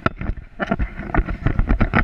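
Wind buffeting a camera microphone held in the airflow of a paraglider in flight, a low rumble broken by rapid, irregular thumps and crackles.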